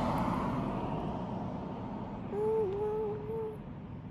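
A steady rushing background noise, with a short closed-mouth hummed vocal sound, like an 'mm-hmm', held for about a second just past the middle.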